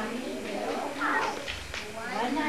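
Voices of young children and a woman in a group, with high, gliding pitch.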